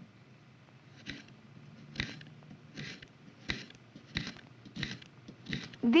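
A paring knife slicing through a raw carrot, each cut crunching through the crisp vegetable and knocking on a wooden cutting board. There are about eight cuts, roughly one every three-quarters of a second, coming a little faster near the end.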